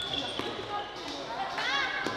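Floorball game sounds: sharp clicks of sticks striking the plastic ball, squeaks of shoes on the court floor, and players' voices. A curving high squeak comes near the end.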